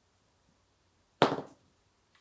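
Dice rolled onto a tabletop for a wargame move, a short clatter about a second in.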